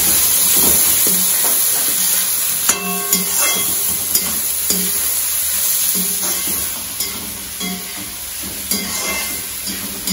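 Shredded vegetables sizzling as they are stir-fried in a large wok over a high flame, with a slotted metal ladle scraping and knocking against the pan every second or so. One knock about three seconds in rings briefly.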